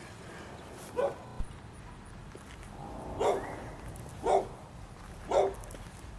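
A dog barking four times, the last three about a second apart.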